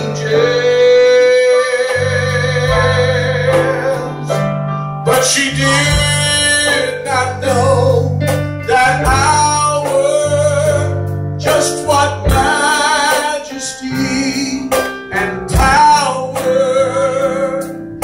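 A solo voice singing a slow song into a microphone, amplified, over instrumental accompaniment with sustained bass notes. The singer holds long notes with vibrato.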